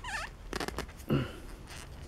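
Clear plastic housing of an inline filter used as a drip valve, twisted by hand to unscrew it: a brief squeak with a wavering pitch as plastic rubs on plastic, then a few small plastic clicks.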